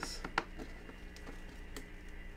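Snap-on lid of a clear plastic storage tub being pried up and lifted off: a handful of short plastic clicks and snaps, the loudest a little under half a second in.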